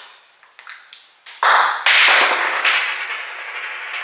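Small makeup products clattering and rattling as they are fumbled and knocked about. A few faint ticks come first, then a loud clatter starts suddenly about a second and a half in and runs on for about three seconds.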